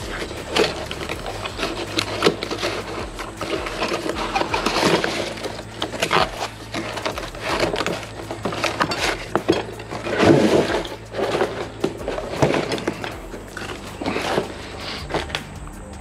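Cardboard box being opened and handled: flaps and inner packing rustling and scraping, with many irregular sharp knocks and clicks.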